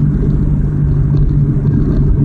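Car engine and road noise heard inside the cabin: a steady low hum with rumble, the car rolling gently in fourth gear with the accelerator eased.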